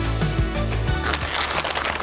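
Background music that stops about a second in, followed by the dense crackling of a plastic snack wrapper being torn open and crinkled.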